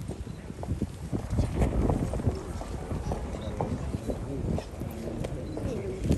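Footsteps of a crowd on hard ground, irregular heel clicks and shuffling, over murmuring voices.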